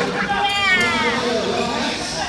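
A single high-pitched shout that falls in pitch, lasting under a second, over background voices and chatter in an echoing indoor futsal hall.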